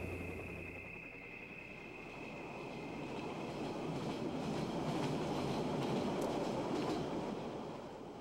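Passenger train running, heard from inside the carriage: a steady rumble of wheels on the track that swells in the middle and fades near the end.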